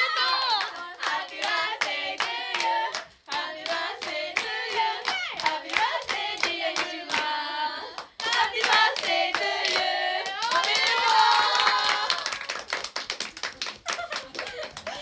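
A group of young women singing together unaccompanied while clapping along to a steady beat, about three claps a second. Near the end the clapping speeds up into quick applause.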